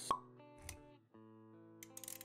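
Intro-animation sound effects over music. A short plop comes just after the start, and a dull low thump follows about two-thirds of a second in. Held plucked-string notes play underneath, and a few quick clicks come near the end.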